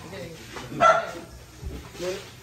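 A dog barks once, short and loud, about a second in, over faint low voices.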